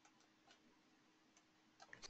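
Near silence with a few faint, scattered computer mouse clicks.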